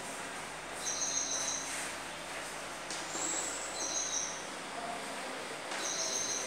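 Chalk scratching on a blackboard as a word is written, with four short, high, steady bird chirps: about a second in, at about three seconds, at about four seconds and near the end.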